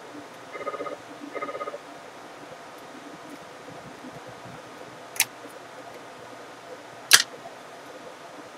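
Small screwdriver working at a laptop's display panel while the webcam cable connector is pressed into place: two short buzzy rattles near the start, then two sharp clicks about five and seven seconds in, the second the loudest.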